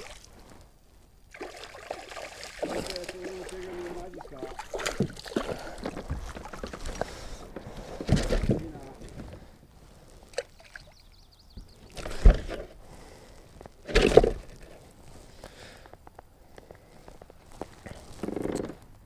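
Water sloshing and splashing around a kayak with a few sudden knocks, as a hooked largemouth bass is fought and lifted aboard.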